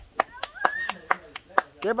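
Hands patting corn masa into tortillas, a steady run of sharp slaps about four a second.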